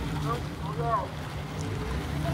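Dodge Challenger engine running steadily at low revs as the car creeps across the lot, with a person's voice briefly over it.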